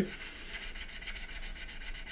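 A small sanding stick rubbed back and forth in quick, light strokes over the styrene plastic of a scale model kit, smoothing down filler in a sink mark. It gives a soft, fine scratchy hiss.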